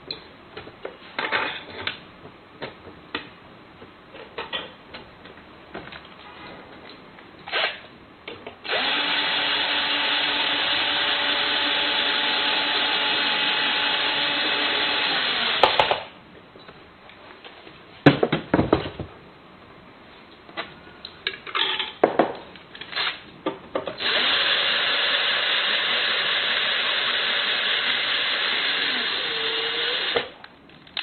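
An electric drill-driver driving in the screws that fasten a smart door lock's back panel. It makes two steady runs of several seconds each, the first starting a little under a third of the way in and the second near the end, its pitch dropping just before it stops. Between the runs come clicks and knocks of handling, with one sharp knock a little past the middle.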